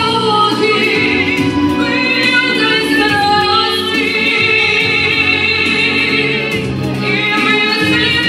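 A woman singing a song through a microphone over an instrumental accompaniment, holding one long note from about four seconds in until nearly seven.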